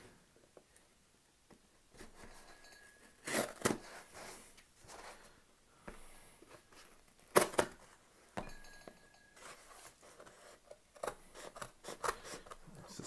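Scissors cutting open a small cardboard box, with snips, scraping and tearing of cardboard. Scattered sharp clicks come through, the loudest about seven seconds in.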